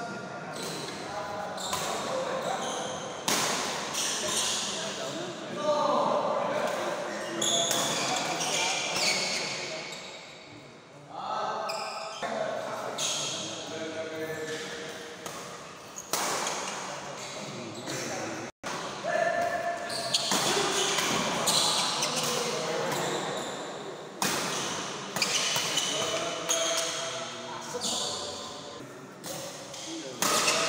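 A badminton rally in a sports hall: sharp racket strikes on the shuttlecock and players' footfalls on the court, echoing in the hall. Voices call out throughout.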